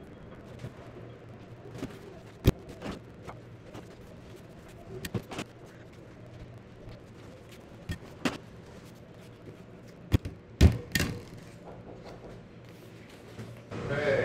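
Scattered knocks and clicks of small objects being handled on a table, the loudest a pair of knocks about three-quarters of the way through, over a faint steady hum.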